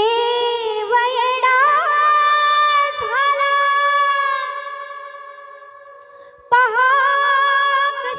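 Female voice singing long, ornamented held phrases of a Marathi gondhal song, with no drums yet. The first phrase starts suddenly and fades away; a second begins about six and a half seconds in.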